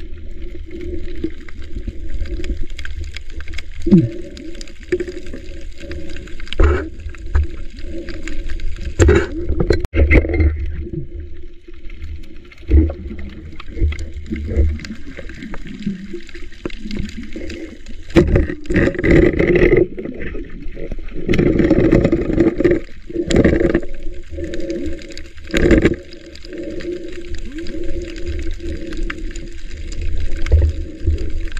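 Muffled underwater sound of water moving around the camera: gurgling and sloshing over a steady low hum, with scattered knocks. It grows louder for several seconds past the middle.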